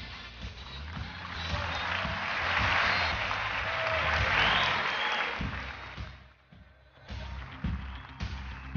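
Studio audience applauding over backing music with a steady beat; the applause swells over the first few seconds and dies away about six seconds in. The music drops out briefly with it and comes back about a second later.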